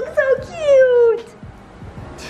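A puppy whining: a short cry, then a longer whine that falls in pitch, with a woman's baby talk at the start.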